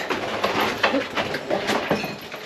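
Footsteps climbing gritty brick-and-concrete stairs, a quick, uneven run of scuffs and steps.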